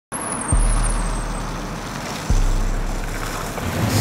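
Longboard wheels rolling on pavement in a steady rumble, with two deep thumps, one about half a second in and one a little past two seconds in.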